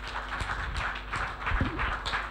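A small studio audience applauding.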